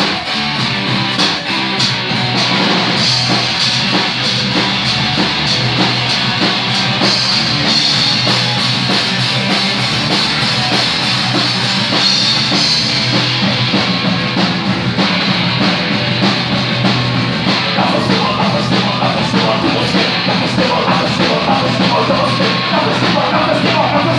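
A rock band playing loud and live, with a drum kit and amplified guitars, heard from among the audience.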